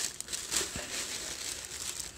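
Dark packing wrap crinkling and rustling steadily as it is gripped and lifted out of a cardboard box.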